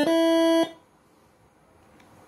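Multi-trumpet 'telolet' air horn melody driven by a Moreno Airhorn MS5 six-horn module: one held note that cuts off sharply about two-thirds of a second in, followed by near silence.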